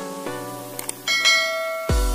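Background music of short plucked notes, then, about a second in, a bright bell-like chime that rings on: the sound effect of a subscribe-bell animation. Near the end, an electronic beat with deep bass thumps starts.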